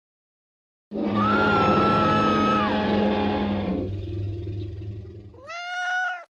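Short animated-intro music sting: after about a second of silence, a loud sustained chord with a high held note that slides down, fading away over a few seconds, then a short rising pitched cry near the end.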